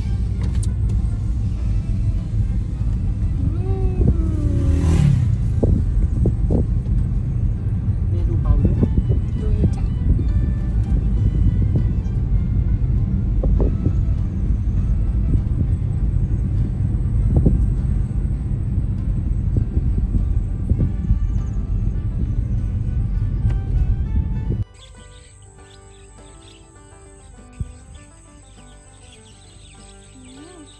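Car cabin road noise while driving: a steady low rumble with scattered small knocks. It stops abruptly about 25 seconds in, leaving a much quieter background with a faint high steady tone.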